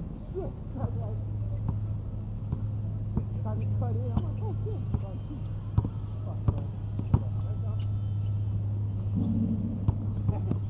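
A basketball being dribbled and bounced on a hard court: a string of sharp, irregular thumps, the loudest a few in the second half, with players' voices faint in the background over a steady low hum.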